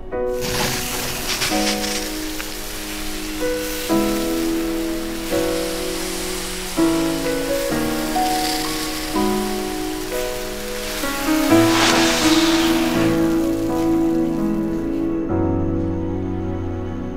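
Fountain firework hissing steadily as it sprays sparks, starting suddenly and cutting off about a second before the end, over slow background music.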